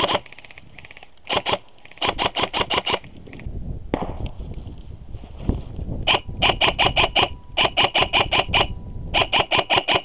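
Systema PTW airsoft rifle firing several short full-auto bursts, about nine shots a second, with a pause in the middle filled by rustling noise.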